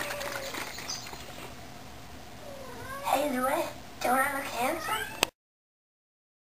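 Turkish Angora kitten meowing, once about three seconds in and then several times in quick succession a second later, over low background noise; the sound cuts off suddenly a little after five seconds.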